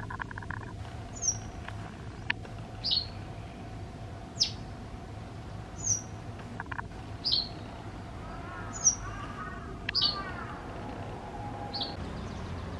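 White wagtail calling: about eight short, sharp high notes, each dropping quickly in pitch, spaced roughly a second and a half apart. A few softer, lower notes come about nine seconds in.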